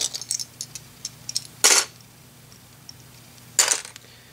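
Plastic Lego slope pieces clattering as they are picked through and dropped into a clear plastic bin: a few light clicks, then two short, louder clatters about two seconds apart.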